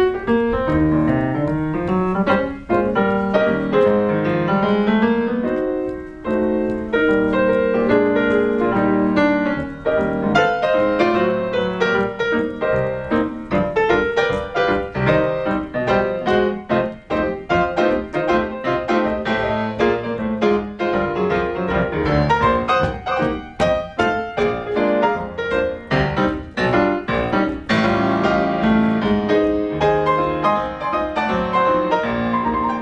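Yamaha grand piano played solo in stride style, a steady stream of notes and chords from low bass to treble.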